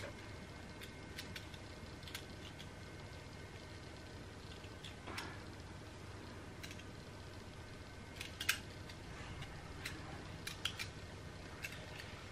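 Stainless steel soap beveller shaving the edges of a soap bar: faint, scattered scraping strokes, a few sharper ones in the second half, over a low room hiss.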